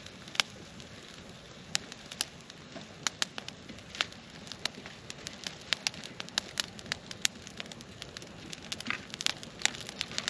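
A small wood campfire of burning twigs and sticks crackling, with irregular sharp pops several times a second over a low hiss.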